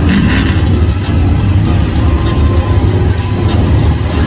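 Lifted mud truck's engine running steadily as it drives through deep mud, with music playing over it.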